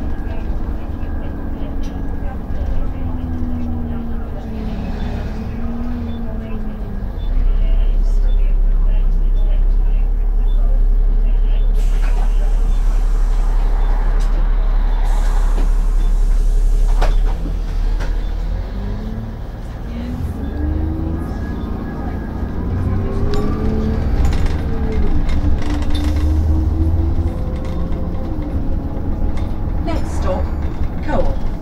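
Engine and road rumble heard from inside a moving single-deck bus, with a louder, steady low engine drone for about ten seconds in the middle and a few knocks and rattles from the bodywork.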